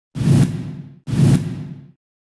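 News-channel logo intro sound effect: two identical whoosh-and-hit strokes about a second apart, each starting sharply with a deep hit under a hiss and fading out within a second.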